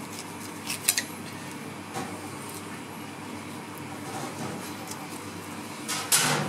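Quiet knife work as a fillet is cut from a flatfish on a plastic cutting board, with a few sharp clicks from the knife a little under a second in and one more about two seconds in, over a steady background hum.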